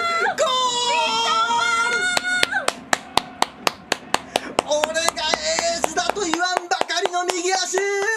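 A commentator's long, high-pitched held goal scream, then rapid hand clapping at about five claps a second from about two seconds in, with excited yelling returning over the claps in the second half.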